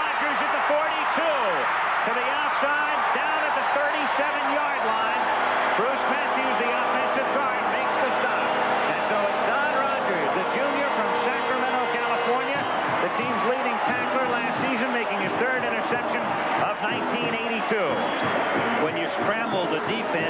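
Large stadium crowd cheering loudly and steadily after an interception, a mass of many voices at once, with steady held tones joining in from about five to twelve seconds in.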